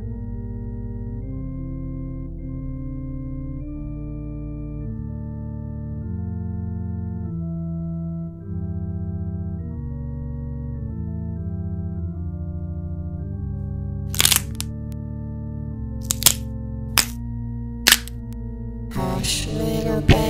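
Slow organ music of long, low held chords that change in steps. Four sharp clicks or cracks come in the last third, and a busier, noisier sound starts just before the end.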